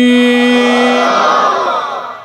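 A crowd's loud collective shout swells and fades, over the end of a man's long sung note that stops about a second in.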